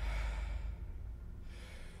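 A person breathing out with a sigh, heard twice, over a low rumble.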